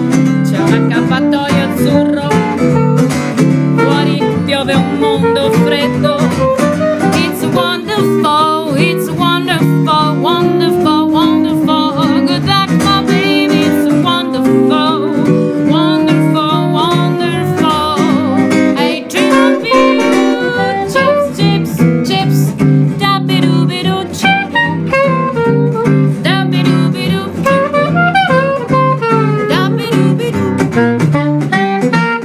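Acoustic guitar and straight soprano saxophone playing live, with the guitar strumming chords under a wavering saxophone melody.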